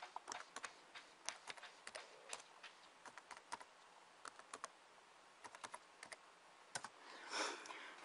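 Faint, irregular keystrokes on a computer keyboard as a password is typed, with a short pause about halfway through. Near the end there is a brief soft rustle.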